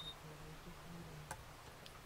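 Quiet room with a faint low hum, broken by one small sharp click a little over a second in and a fainter tick near the end.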